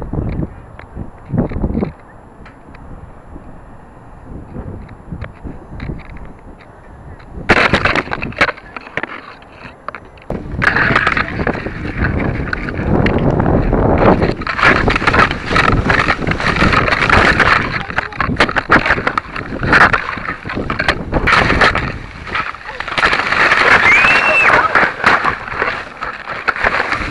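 Leaves and twigs rustling and scraping against a model rocket's onboard keychain camera as the rocket is jostled in a tree during recovery. A couple of soft knocks come first. About a third of the way in, a loud, dense crackling rustle with many sharp snaps begins and keeps going.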